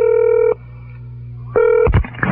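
Telephone tones over the line: a steady tone that cuts off about half a second in, a short second tone near the end, then a click as the call is answered.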